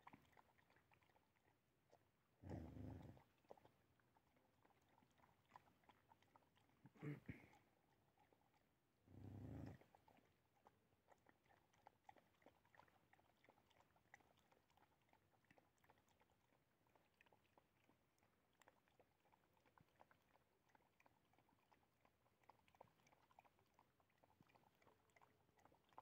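Faint sounds of dogs eating from a tray: soft scattered chewing clicks, with three short louder sounds about three, seven and nine seconds in.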